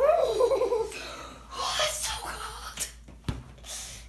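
A child laughing: a pitched laugh right at the start that falls in pitch over about a second, then breathy bursts of laughter, with a sharp click a little after three seconds.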